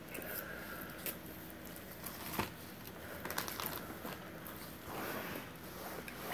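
Quiet eating sounds: spicy instant noodles being chewed and slurped off forks, with scattered small clicks and one sharper click about two and a half seconds in.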